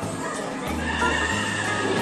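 A recorded horse whinny sound effect, heard about half a second to a second and a half in, over steady background music with a low beat.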